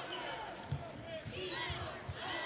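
A basketball being dribbled on a hardwood court, a few dull bounces over the murmur of an arena crowd.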